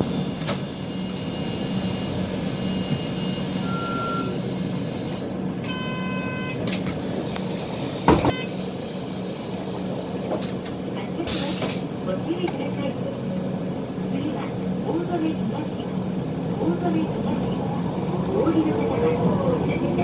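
City bus running, heard from inside the cabin as a steady low drone, with a single clack about eight seconds in and a brief hiss about eleven seconds in. A voice announcement names the Ōzone stops near the end.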